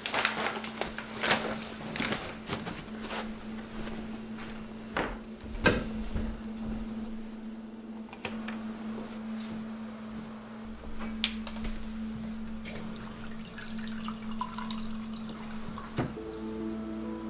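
A string of household sounds over a steady low hum: rustling and sharp clicks in the first few seconds with a loud knock near six seconds, a light switch clicking about eight seconds in, and water from a kitchen tap near the end.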